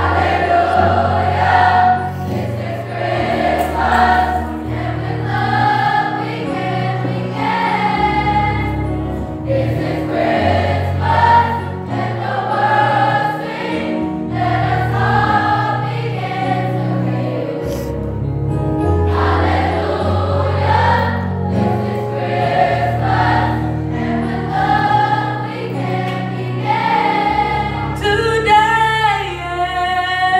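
Youth choir singing a song in parts over steady low bass notes from an accompaniment. Near the end a single voice with vibrato stands out above the choir.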